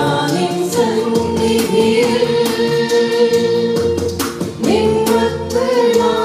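A group of women singing a Christian song together in English, holding long notes.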